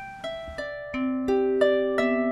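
Marini Made 28-string bass lap harp being plucked through its built-in pickup: a slow line of about six single notes, some high and some low, each ringing on under the next.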